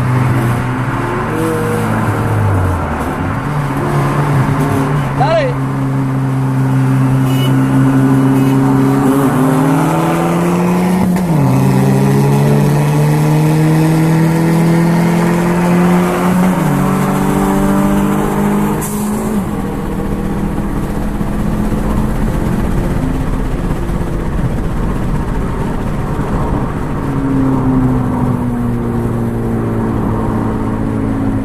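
A Scion tC and a turbocharged Mazda 626 racing side by side, heard from inside one of the cars. The engines pull hard through the gears, each one's pitch climbing slowly and then dropping at every upshift, three or four shifts in all. About two-thirds of the way through they ease off and die down.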